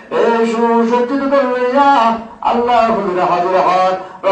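A man's voice in devotional chanting, drawn out in long melodic phrases: two phrases with a short breath a little past two seconds in.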